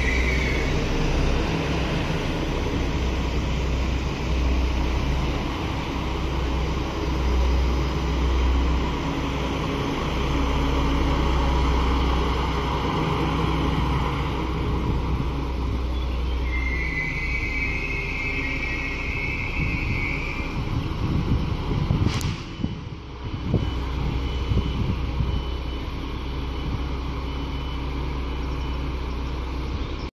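Alstom Coradia LINT 54 diesel railcars rumbling steadily as one pulls out. A high wheel squeal comes briefly at the start and again for about four seconds a little past the middle, and there is a single sharp knock about two-thirds of the way through.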